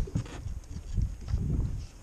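Handling noise: irregular low thumps and rustling of clothing and gear moving right against a body-worn camera's microphone, with a few light knocks.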